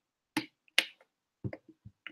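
A handful of short, sharp clicks at uneven spacing, the two loudest in the first second.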